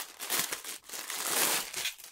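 Clear plastic garment bag crinkling and rustling in uneven bursts as a garment is pulled out of it, stopping near the end.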